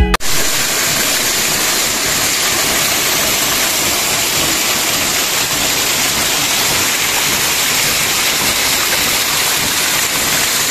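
Small waterfall pouring over rocks into a pool, heard up close as a steady, loud rush of splashing water.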